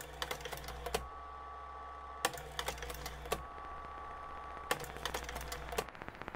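Typing on a keyboard in three quick bursts of key clicks, over a steady low hum.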